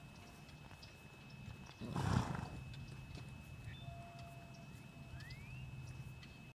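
A horse gives one short, loud snort about two seconds in.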